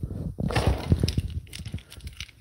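Irregular plastic knocks and clicks as a paddle holder is worked into a kayak's side gear rail, with rubbing and handling in between.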